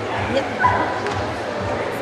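Dogs barking and yipping over a steady din of crowd chatter and background music.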